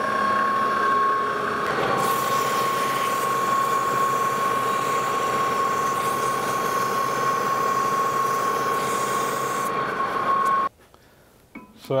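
Lodge & Shipley metal lathe running with a steady whine while a strip of emery cloth is held against the spinning steel shaft to polish it to final size, adding a hissing rub from about two seconds in until near ten seconds. The sound cuts off suddenly near the end.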